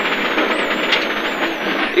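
Rally car's engine and road noise heard inside the cabin at speed, a steady, even sound.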